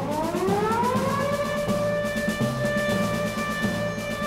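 A warning siren from a horn loudspeaker winding up in pitch over about a second, then holding one steady note, over background music with a drum beat.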